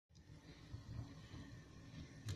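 Penny can stove burning with a faint, unsteady low rumble from its flame.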